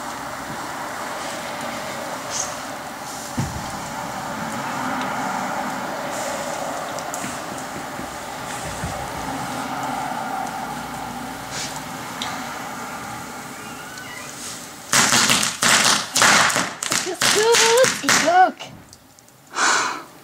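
A lit firework burning on the ground with a steady hiss. About fifteen seconds in, a rapid run of loud cracks and bangs goes off and lasts about three and a half seconds, followed by voices calling out.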